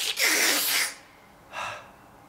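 A male singer's sharp, breathy exhale, hissing and lasting under a second, followed about a second and a half in by a shorter, softer intake of breath.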